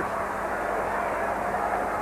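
Arena crowd noise from a wrestling audience, steady and even, reacting after a move from the second turnbuckle.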